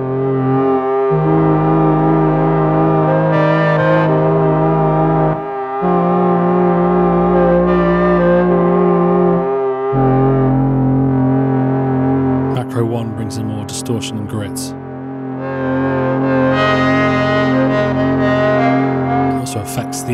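Arturia MiniFreak synthesizer playing its 'Pumpchange' patch: a dark, warbly pump-organ-style sound in held chords, with added ambience from its Macro 2. The chord changes about a second in, again near five and a half seconds and at ten seconds. Brief crackly noise comes in high up around thirteen seconds and again near the end.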